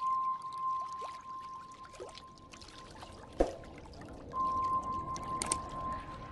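Animation sound effects: a thin, steady high tone that drops out for about a second in the middle, faint swishes, a sharp thump about three and a half seconds in, and a few quick clicks near the end.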